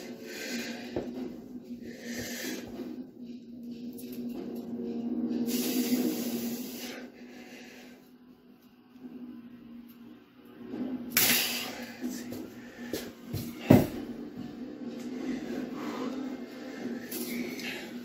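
A man breathing forcefully in several long hissing exhales as he strains to bend a 60 kg power twister spring bar. There is a single sharp knock about three-quarters of the way through.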